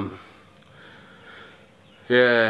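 A man breathing in through his nose between phrases: a soft sniff lasting about a second.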